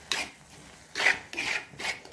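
A cooking utensil stirring shredded cabbage and grated coconut in a pan, scraping along the pan's bottom in about four short strokes.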